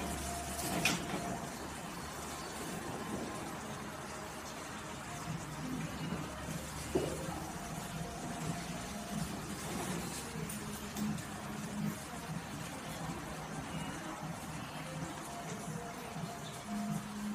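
Electric equine massage pad on a horse's back running with a steady low motor hum, with music playing faintly.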